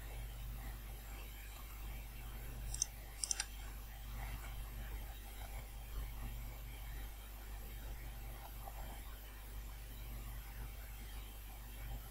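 A few faint computer keyboard clicks about three seconds in, over a steady low hum.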